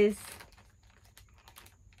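The end of a woman's word, then a few faint, scattered clicks and taps from handling small items, such as a pair of sandals and their packaging.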